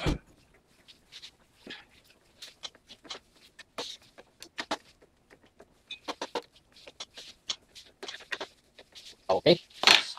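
A knock, then irregular small clicks and taps of a door-lock latch bolt being handled and pressed into its recess in the door edge.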